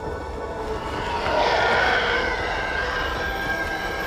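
Trailer sound mix of an approaching starfighter: a steady engine rumble that swells about a second in, with a rising whine on top.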